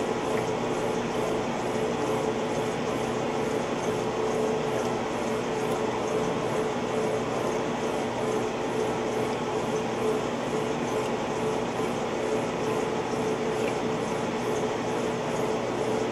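Montgomery Ward Signature 2000 top-load washer (model FFT6589-80B) agitating a load of shirts in water. Its motor and transmission make a steady hum under the sloshing water.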